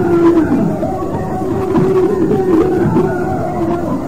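Congregation singing a slow hymn together, many voices holding long notes and sliding between them.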